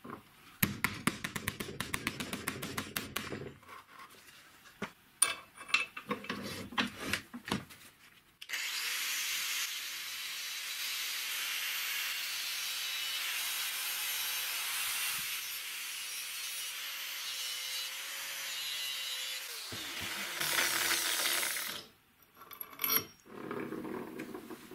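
Angle grinder cutting notches into a small steel piece held in a bench vise: a steady grinding hiss with the motor's hum for about eleven seconds, the motor then winding down, followed by a short louder burst. Before it come a few seconds of rapid crackling and some scattered metallic clicks and knocks.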